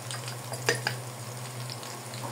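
Meat, garlic and bay leaves frying in oil in an aluminium pot, a steady sizzle under a low steady hum, with two short clicks a little under a second in.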